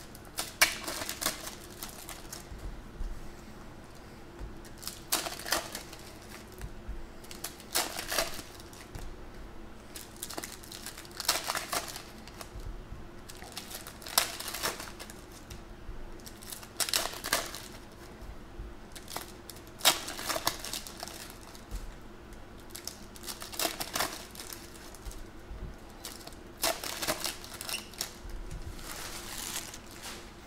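Foil trading-card pack wrappers crinkling and tearing, with cards being flipped through and stacked by hand, in short bursts every two to three seconds.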